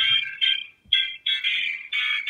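Accompaniment track stuck in a glitching loop: a short, high-pitched musical fragment stutters and repeats in choppy snatches, about two to three times a second.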